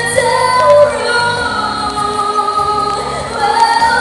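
A woman singing a Mandarin pop ballad live into a handheld microphone over backing music, holding long notes that change pitch every second or so.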